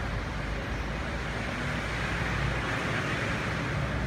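Street traffic noise: a steady engine rumble with a passing vehicle that swells a little louder about two to three seconds in.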